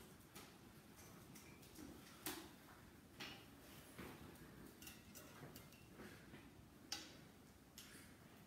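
Near silence: room tone with faint, scattered clicks and taps, two slightly louder ones about two and seven seconds in.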